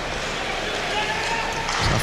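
Ice hockey arena ambience on a game broadcast: a steady wash of crowd and on-ice game noise. The play-by-play commentator's voice comes in right at the end.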